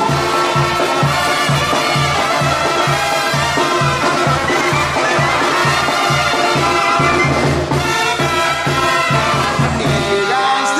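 Live banda sinaloense brass band playing: trumpets, trombones and clarinet over a tuba's steadily pulsing bass line, with drums.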